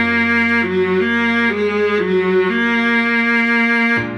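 Viola playing a melody over a backing track, its notes changing about twice a second above a held low bass note that shifts just before the end.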